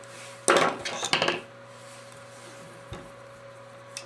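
Metal hand tools clattering on a tabletop as a wire stripper is set down and a pair of crimpers is picked up: two clanks, about half a second and about a second in, then a faint click near the end.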